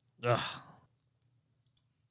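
A person's short, breathy sigh of disgust, an exasperated "ugh", lasting about half a second.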